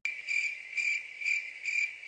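Crickets-chirping sound effect, a steady high chirring that pulses about twice a second and starts suddenly. It is the comic 'awkward silence' gag for a blank, unanswered moment.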